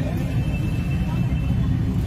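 Steady low rumble of street traffic, with a faint high steady tone over it.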